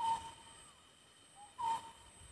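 A bird calling twice in a quiet field: each call is a short lower note followed by a longer, steady higher note, about a second and a half apart.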